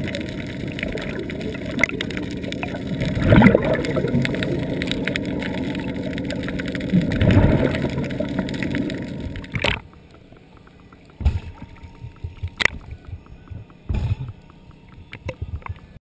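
Underwater noise picked up by a diver's camera: a steady rush of moving water with a couple of louder surges, which cuts off suddenly a bit more than halfway through to a much quieter underwater background with scattered clicks, crackles and a few sharp knocks.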